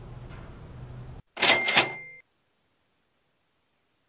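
A cash-register "ka-ching" sound effect about a second and a half in: two quick metallic strikes with a bell ringing on briefly. Before it there is a faint low hum.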